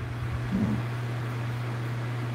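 Steady low hum with an even hiss underneath: the room's background noise, with a brief faint murmur of voice about half a second in.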